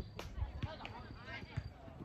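A soccer ball being kicked: a sharp thump right at the start, followed by a few duller thumps, under distant shouting from players.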